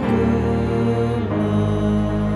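A woman and a man singing a hymn, holding sustained notes, with a change of chord about a second in.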